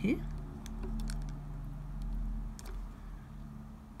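A handful of light clicks as square resin diamond-painting drills are handled with tweezers and set onto the canvas, over a faint steady low hum.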